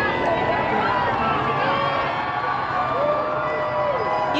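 Large crowd of street spectators cheering and shouting, many voices overlapping, with several long held yells rising above the rest.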